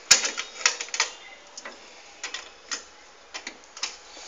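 A series of sharp, irregular taps and clicks. A loud cluster comes in the first second, then single clicks follow every half second or so.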